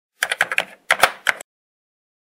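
Keyboard typing: about seven quick keystroke clicks in two short runs, stopping about a second and a half in.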